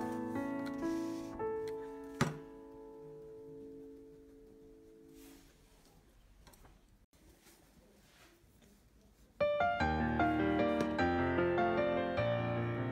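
Solo piano background music. Chords ring and fade away over the first few seconds, leaving a quiet gap, then the piano comes back in louder about nine and a half seconds in.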